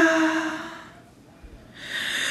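A woman's wordless sung note, a cappella with an added echo effect, held and dying away over the first second. Near the end, a sharp intake of breath before the next phrase.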